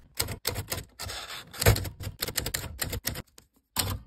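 Manual typewriter keys striking in a quick, irregular run of sharp clacks, with one heavier clack near the middle and a brief pause before a last strike near the end.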